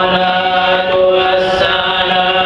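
Male voices in Islamic devotional chanting, holding long sustained notes that step to a new pitch about a second in.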